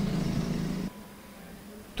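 A motor vehicle engine running with a steady low hum, stopping abruptly about a second in and leaving only faint background.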